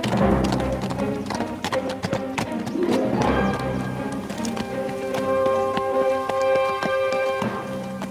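Dramatic film score, with low swells near the start and about three seconds in, then held chords until near the end. Under it, the hoofbeats of a ridden horse on a dirt road.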